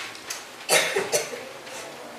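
A person coughing twice in quick succession, a little under a second in.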